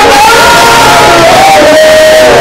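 Very loud praise singing: men singing into handheld microphones with long held notes, over a congregation shouting and singing along.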